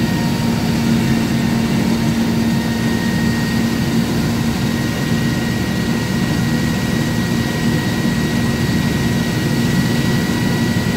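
Fan blower running steadily: an even rush of air with a steady low hum and a faint high whine.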